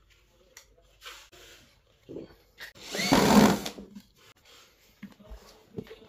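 Cordless electric screwdriver driving a screw to fix the terminal plate onto a speaker cabinet: one burst of about a second midway, rising in pitch as it spins up, with light handling knocks before and after.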